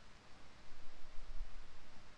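Quiet room tone: a faint, even hiss with no distinct event.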